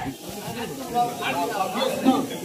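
People talking in a street crowd, over a steady hiss.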